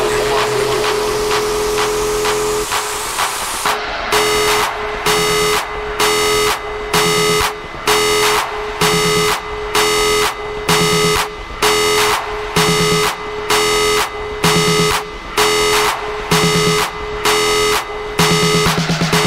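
Techno in a continuous DJ mix: a rising noise sweep over a held synth tone, then about four seconds in a regular chopped synth pattern cuts in and repeats.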